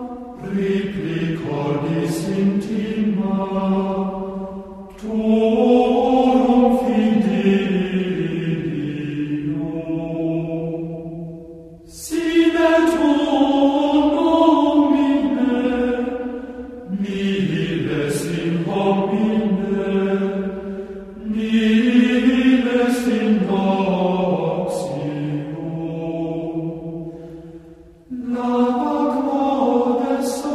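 Gregorian chant: voices singing a slow melody in six phrases, each breaking off briefly before the next.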